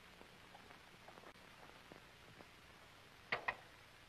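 Near silence with a few faint ticks, then two sharp clicks in quick succession near the end.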